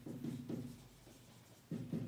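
Marker pen writing on a whiteboard: a few short strokes in the first half second, a quieter gap, then two more strokes near the end.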